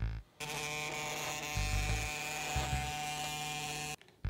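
Mini vibration motor of a homemade battery-powered vibrating Pikachu toy buzzing steadily, shaking its wire legs on the tabletop. The buzz starts about half a second in and cuts off suddenly at the end, with two short deeper pulses in the middle.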